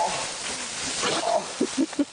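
Wordless vocal sounds from a man in pain after being hit by paintballs: short groans and gasps at the start and again past the middle, a few quick grunts near the end. A steady hiss runs underneath.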